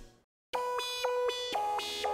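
After a brief fade into silence, an electronic synthesizer melody starts about half a second in: beep-like, chiptune-style notes that step up and down in pitch every quarter second or so.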